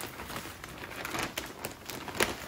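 Faint crinkling and crackling of a plastic bag of potting soil as it is handled and tipped, with scattered small ticks.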